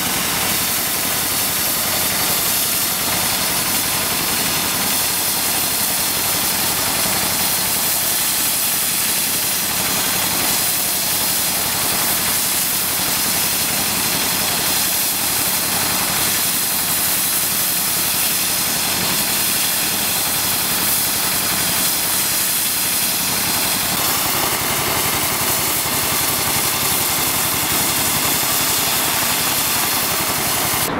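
Road-marking equipment running steadily: an engine drone with a continuous hiss from a gas-fired heat lance burning against the road surface.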